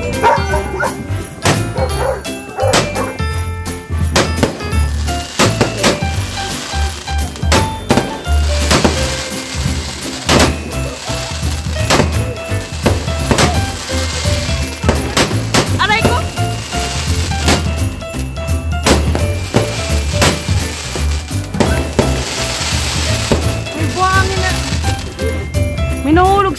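Fireworks going off: many sharp bangs and crackles at irregular intervals, over loud music with a heavy bass beat and voices.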